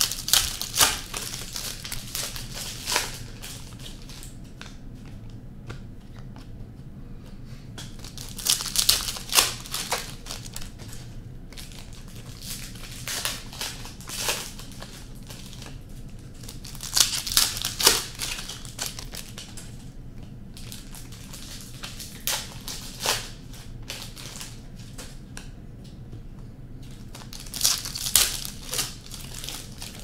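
Trading-card pack wrappers being torn open and crinkled by hand, in short bursts every four to five seconds, about six in all.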